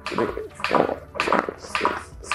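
Rhythmic breathy puffs, about two a second, in time with hands pushing chest compressions on a CPR training manikin.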